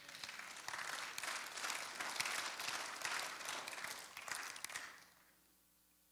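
A congregation applauding, fairly faint, dying away about five seconds in.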